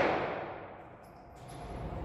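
The echo of a .22 LR shot from an AR-15-style rifle fitted with a CMMG .22 LR conversion kit, dying away in an indoor shooting range over about a second. It is followed by low, steady room noise.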